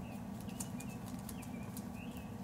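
A small bird chirping in short repeated notes, with light crackling rustles and a steady low hum underneath.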